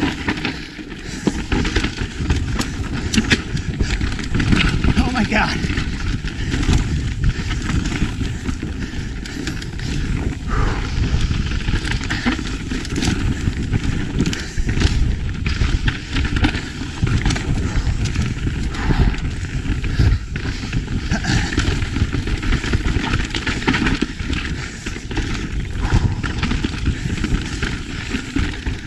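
Yeti mountain bike ridden fast down a dry, loose dirt singletrack: a steady rush of tyre and wind noise, broken by frequent sharp clatters and knocks as the bike goes over bumps and roots.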